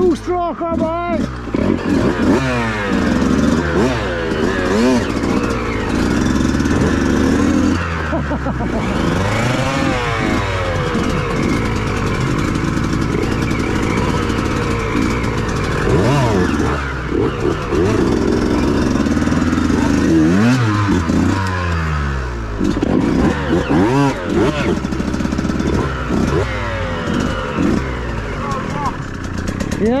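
Two-stroke enduro motorcycle engines, a KTM 150 and a Yamaha YZ 125, running at low speed over rocky ground. The revs rise and fall in short blips, with steadier stretches in between.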